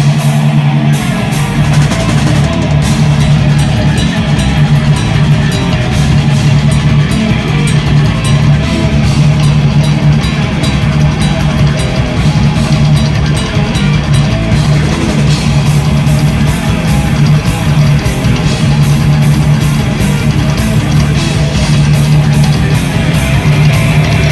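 Black metal band playing live: distorted electric guitar over a drum kit with a dense, unbroken run of drum and cymbal hits, loud and steady throughout.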